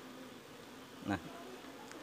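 Faint, steady hum of Asian honey bees (Apis cerana), a captured colony buzzing in a bucket.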